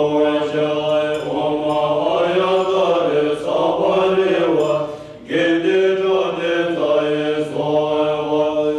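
A group of Tibetan Buddhist monks chanting in unison: a steady, low-pitched recitation that moves in phrases, with a brief pause for breath about five seconds in.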